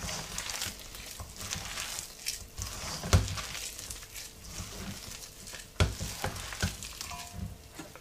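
Hands squeezing and mixing wet onion bhaji batter of sliced onion and gram flour in a stainless steel bowl, an uneven sticky rustling with a few sharper knocks, the loudest about three seconds in and another near six seconds.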